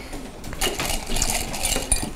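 Classroom bustle: scattered small clinks and rattles of objects on desks with rustling, as the room settles after partner talk.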